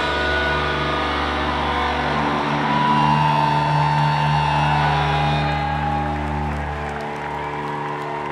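Amplified electric guitars left ringing after a song's last chord, a steady sustained drone of held notes and amp feedback with no drums. A clear high tone swells near the middle, and the brighter edge of the sound fades about two-thirds of the way through.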